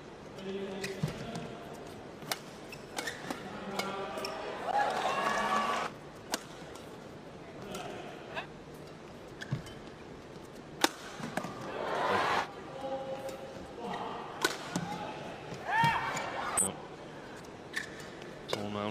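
A badminton rally: racket strings striking the shuttlecock in sharp, irregular cracks a second or more apart, the loudest about eleven seconds in. Between the hits come bursts of high squeaking from court shoes on the synthetic mat.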